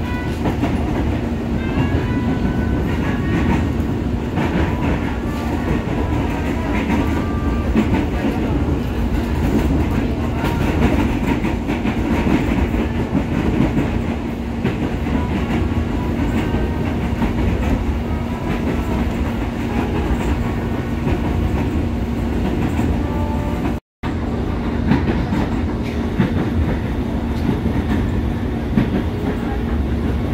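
Electric commuter train running at speed, heard from inside the carriage: a continuous rumble of wheels on rail with a constant low hum. The sound drops out for an instant about 24 seconds in.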